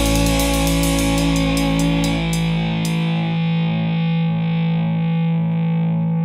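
Closing distorted electric-guitar chord of a rock song, ringing out and slowly dying away. The deep bass fades out about three seconds in.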